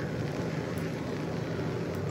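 Steady, even hiss of kitchen background noise with no distinct events.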